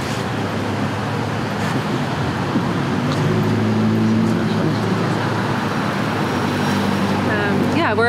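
Street traffic: a motor vehicle's engine running close by, a steady low hum that grows louder a few seconds in.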